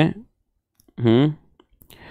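A man's voice in a pause between sentences: the end of a word, then one short voiced sound about a second in, with near-silent gaps and a couple of faint clicks.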